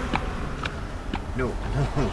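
Clock on a home-made time bomb ticking steadily, about two ticks a second.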